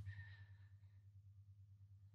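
Near silence: quiet room tone with a steady low hum.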